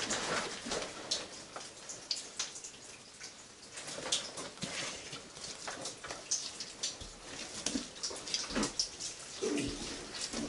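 Irregular footsteps and scrapes on wet chalk rubble and timber, with water dripping and trickling in the tunnel.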